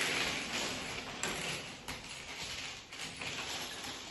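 Loose plastic Lego bricks clattering and clicking as several people's hands sift through a pile spread across a table, with a couple of sharper clicks a second or two in.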